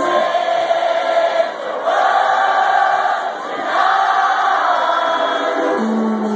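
House music playing loudly through a club sound system while a large crowd cheers and sings along, the crowd swelling twice; the recording has almost no bass.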